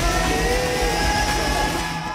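Live solo acoustic guitar music built up in loops with a loop pedal: sustained, slowly gliding pitched tones over a steady pulsing low beat, with an audience present.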